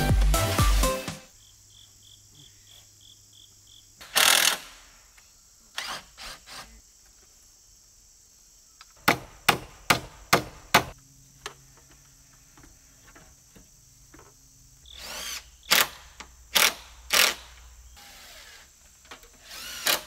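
Hammer blows nailing a wooden rafter into place: a quick run of about five sharp strikes midway, with other scattered knocks before and after. Crickets chirp faintly underneath, and a music bed cuts off about a second in.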